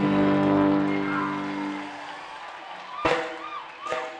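Live band holding a final chord that dies away over about two seconds, leaving a quieter gap with two sharp hits and a warbling, rising-and-falling high tone.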